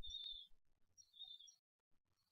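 Near silence, broken by faint, brief high-pitched chirps at the very start and again about a second in.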